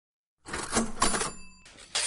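A sound effect: a rattling mechanical clatter starting about half a second in, then a short bell-like ring, then another clatter near the end.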